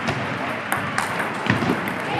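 Table tennis balls clicking off bats and tables, a handful of short sharp ticks over the background noise of a busy sports hall with voices.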